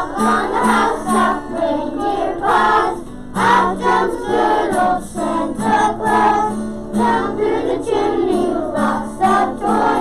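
A group of voices singing a song together over steady instrumental accompaniment.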